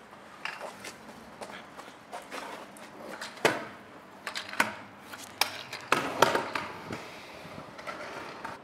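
Stunt scooter wheels rolling on concrete, with a series of sharp clacks as the deck and wheels strike a concrete ledge; the loudest hits come about three and a half seconds in and again around five to six seconds.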